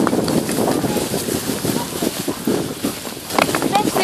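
Two dogs running over snow while towing a bike: irregular crunching and rustling of paws and tyres in the snow.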